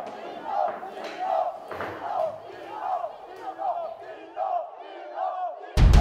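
A crowd shouting, many voices overlapping in repeated angry cries. Loud music with heavy drums cuts in suddenly near the end.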